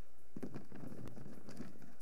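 Steady low background noise of a conference hall, with a faint murmur and a few soft ticks and knocks.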